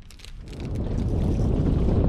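Wind buffeting the microphone, a low rumbling rush that builds up over the first second and then holds steady.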